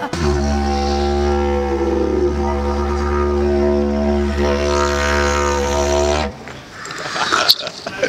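Didgeridoo played as one steady low drone whose tone colour shifts now and then. The drone stops about six seconds in and is followed by a person laughing.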